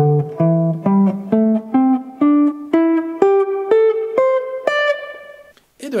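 Archtop jazz guitar playing the C major pentatonic scale ascending, one picked note at a time at about two notes a second, each note ringing into the next, climbing to the top of the scale near the end.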